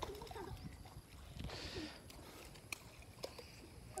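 Quiet water's-edge background with a brief faint splash of water about a second and a half in, and a few faint short sounds from a child's voice.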